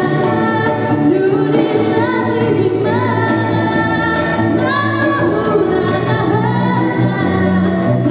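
A woman singing live with a small band of guitars, keyboard and hand drum, her held notes sliding up into pitch over a steady bass line.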